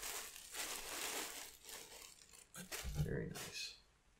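Crinkling and rustling of wrapping as a folded tote bag is pulled out and unfolded, followed by a short low vocal sound about three seconds in.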